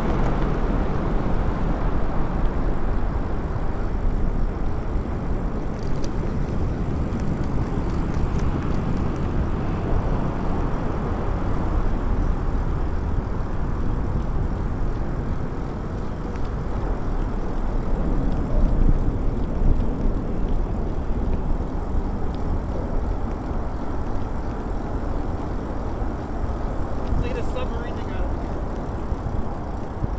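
Steady wind rushing over the microphone of a rider moving along on an e-bike, heaviest in the low end.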